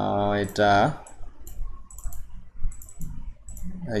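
A man's voice briefly in the first second, then a run of about a dozen light, quick clicks from a computer mouse, some in close pairs.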